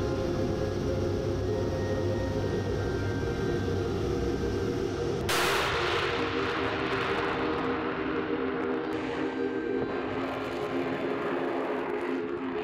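Sukhoi Su-34's twin turbofan jet engines running with a steady hum. About five seconds in, a sudden, much louder rush of jet noise comes in as the aircraft takes off.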